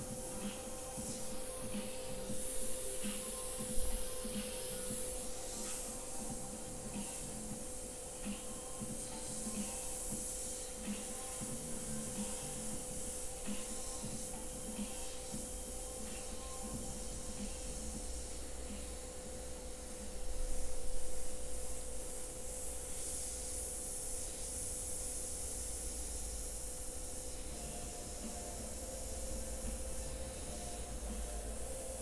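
Gravity-feed airbrush spraying paint with a soft hiss of compressed air, coming in short bursts that are strongest a few seconds in and again around twenty seconds in. A steady hum runs underneath.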